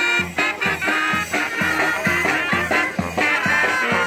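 Brass band playing a lively tune, with held horn notes over a steady beat of about two drum strokes a second.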